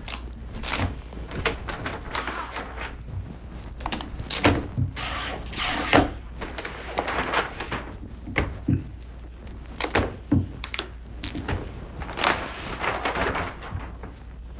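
Self-adhesive architectural vinyl film being unrolled across a desk top and pressed down by hand as its paper liner peels away: irregular rustling and rubbing with scattered knocks on the desk.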